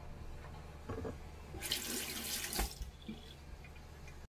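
Water running or pouring for about a second, starting about a second and a half in, with a few light knocks from kitchenware around it.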